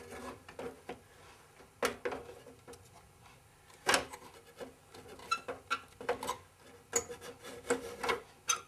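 Power Mac G5's plastic twin-fan assembly being slid down and fitted into the computer case: plastic scraping and rubbing against the case, with a sharp knock about two seconds in, another about four seconds in, and a run of lighter clicks and taps after.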